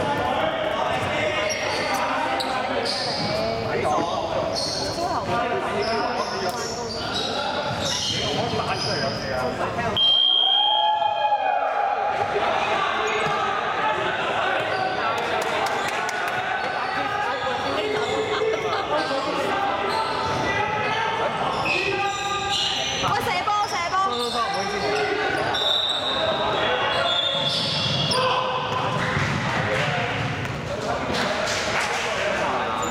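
Basketball bouncing on a wooden gym floor amid players' voices and calls, echoing in a large sports hall.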